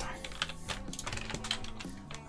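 Typing on a computer keyboard: a run of irregular, quick key clicks.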